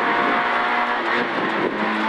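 Peugeot 106 N2 rally car's engine at speed, heard from inside the cabin, its note stepping down in pitch about a second in.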